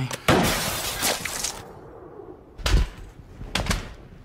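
Glass shattering: a sudden crash of breaking window glass, with shards falling away over about a second, as a police sniper's shot goes through the pane. A heavy thump follows near three seconds in, then two sharper knocks near the end.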